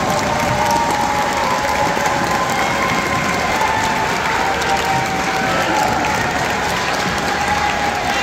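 Audience applauding steadily, with voices calling out and cheering over the clapping.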